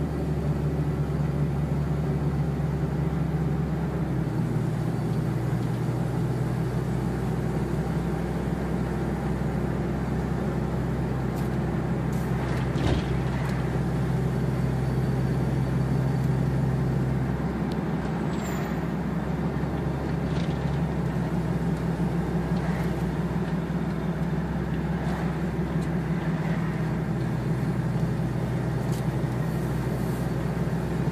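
Car engine and road noise heard from inside the moving car's cabin, a steady low drone. Its pitch steps down about four seconds in and shifts again a little past the middle as the speed changes.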